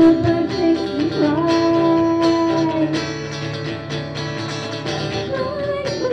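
A woman singing a rock song live over guitar accompaniment, holding one long note for about two seconds before moving on; no words are made out.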